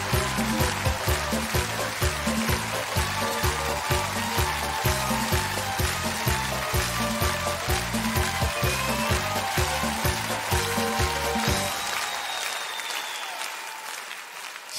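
Upbeat stage walk-on music with a steady bass beat over audience applause. About twelve seconds in the music stops and the applause dies away.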